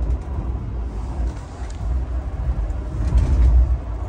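Passenger train running at speed, heard from inside the carriage: a steady low rumble of the wheels and running gear, swelling louder about three seconds in.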